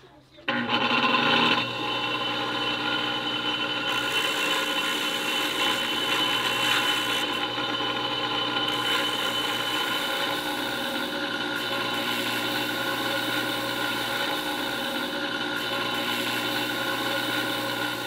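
Bench grinder with a tapered sanding cone on its spindle starts suddenly about half a second in, then runs steadily with a hum and sanding noise as a stone carving is held against the cone.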